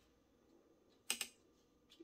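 Mostly quiet, with a brief cluster of light clicks about a second in and a faint tick near the end: hands working pins and blocking wire into a foam blocking mat.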